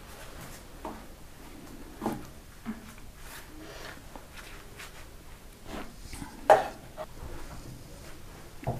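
Quiet kitchen handling sounds as phyllo pastry is laid over poppy-seed filling in a baking tray and a spoon is taken to the filling bowl: a few soft taps and rustles, with one short, louder knock about six and a half seconds in.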